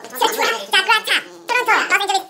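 Speech only: a very high-pitched voice reading out a list of city names, syllable by syllable.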